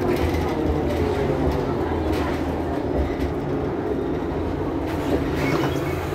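Mercedes-Benz Citaro G C2 articulated bus's engine idling with the bus standing still: a steady low hum with a few faint clicks.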